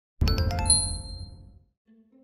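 Short chiming sound logo: a few quick bright chime strikes over a low hit, ringing on and fading away within about a second and a half.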